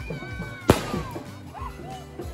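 A single sharp firecracker bang about two-thirds of a second in. Around it, a long high tone bends slowly down in pitch, over background music.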